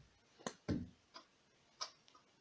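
Four faint, short clicks and taps, spaced unevenly through two seconds, from small plastic toys (a plastic clip and a toy ball) being handled and set down.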